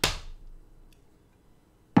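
Two sharp hand slaps on a tabletop, one at the start and one near the end, each ringing out briefly; the second is the louder.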